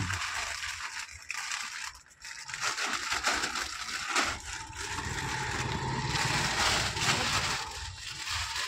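Plastic snack packets crinkling and crackling continuously as they are handled and rearranged on the shelves.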